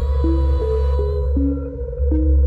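Electronic background music: a deep, steady bass and a held tone under short synth notes that change pitch about twice a second.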